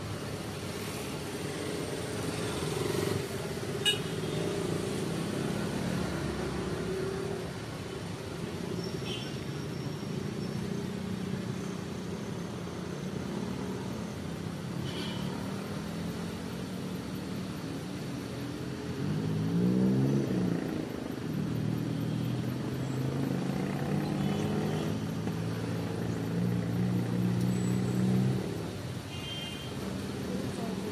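A motor vehicle's engine running over road noise, with a louder swell about two-thirds of the way through where the pitch rises and falls, and a steady engine tone that stops shortly before the end.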